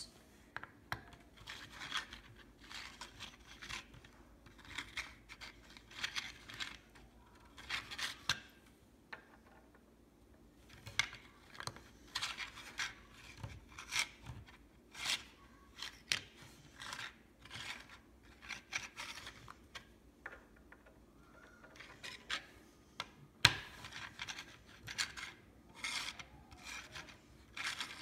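Small plastic Lego pieces being handled and pressed together on a baseplate: irregular rubbing, scraping and light clicking of plastic on plastic, with one sharper click about two-thirds of the way through.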